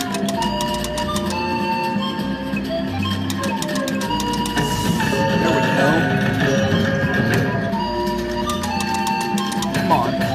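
Kilimanjaro slot machine's free-spin bonus music, a mallet-percussion melody like marimba and glockenspiel, over many short clicks as the reels spin.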